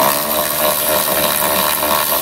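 Milwaukee cordless electric ratchet running at a steady speed with a motor whine, spinning out the bolt on the fuel filter's mounting clamp.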